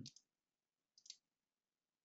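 Near silence, with one faint computer-mouse click about a second in.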